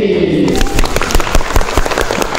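A large group clapping hands in quick, dense applause that starts about half a second in, right as their shouted group chant trails off.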